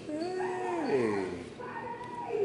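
A drawn-out vocal sound, held at one pitch and then sliding down in pitch for about a second.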